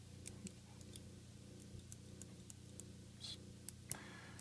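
Faint, scattered light clicks as a small folding stainless-steel pliers multi-tool is handled and unfolded, over a low steady hum.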